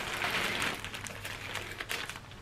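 Plastic poly shipping mailer crinkling and rustling as it is gripped and turned in the hands.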